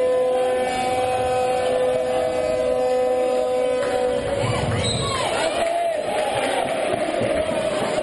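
Spectators in an indoor sports hall chanting and shouting. A steady held tone sounds through the first half and stops about four seconds in, after which rising and falling voices take over.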